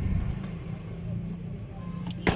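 A car engine running steadily with a low hum, heard from inside the car's cabin.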